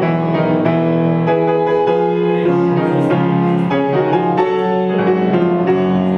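Solo grand piano playing, a steady flow of struck notes over held chords.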